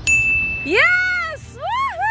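A single bright ding that starts suddenly and rings on one steady tone for well over half a second, followed by a woman's excited, drawn-out shout of "Yeah!" that rises and falls in pitch.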